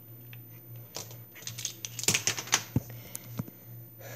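Light plastic clicks and rattles from a handled plastic measuring spoon, growing into a quick flurry of clicks in the middle, as a teaspoon of borax powder is tipped into a bowl of water.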